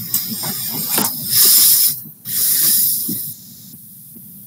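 Loud hissing noise in two bursts, the second ending about three seconds in.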